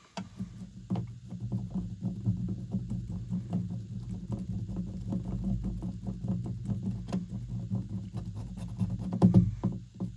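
Flathead screwdriver turning the screw of a plastic outlet cover plate: a run of small clicks and scrapes with close hand-handling noise, loudest near the end.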